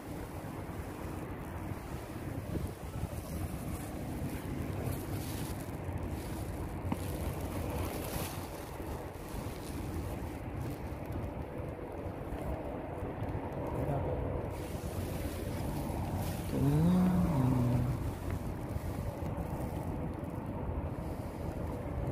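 Small inflatable boat under way: its motor running steadily, with water and wind noise on the microphone. A brief pitched sound rises and falls about two-thirds of the way through.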